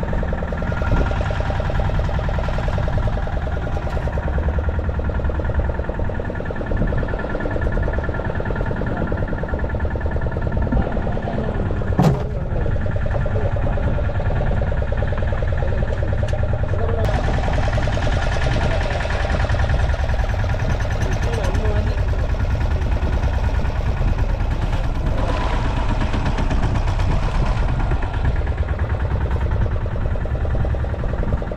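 Fishing boat's engine running steadily, with a single sharp knock about twelve seconds in.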